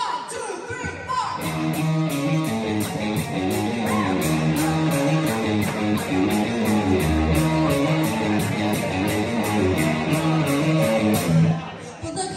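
Live rock band playing an upbeat instrumental intro: electric guitar riff over drums with a steady, quick cymbal beat and keyboard. The playing breaks off briefly near the end.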